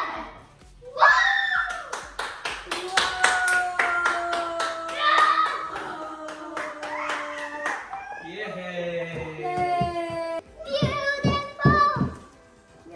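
A small group, children among them, clapping rapidly and cheering with held, excited voices, the clapping strongest in the first two thirds.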